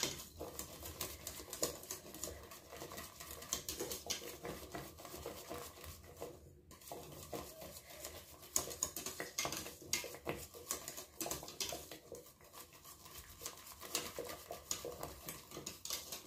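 Small wire whisk stirring thickened custard in a stainless steel pot, its wires tapping and scraping against the pot's sides and bottom in quick, irregular light clicks, with a brief pause about halfway.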